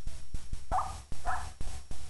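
Two short animal calls, each about a quarter of a second, a little under a second apart, over repeated dull thumps and low rumble.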